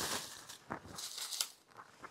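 Folded paper slips and a cloth bag rustling in a few short bursts as the slips are handled and dropped into the bag.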